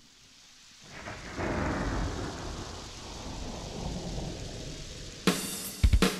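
Thunder-and-rain sound effect opening a song's recorded backing track: a rumble swells about a second in and slowly fades under a hiss of rain. Near the end the band comes in with drum and cymbal hits.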